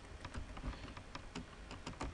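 Typing on a computer keyboard: a string of quiet, irregularly spaced keystrokes.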